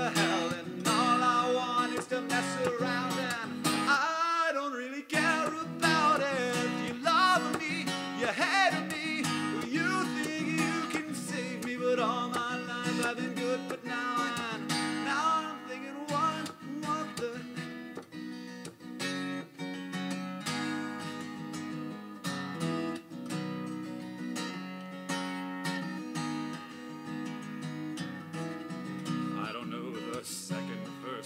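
Acoustic guitar strummed steadily with a man singing over it; the singing is strongest for roughly the first half, after which the strummed chords carry most of the sound.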